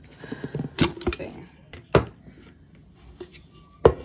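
A few sharp clicks and knocks from a stainless steel insulated tumbler and its lid being handled, the loudest one near the end.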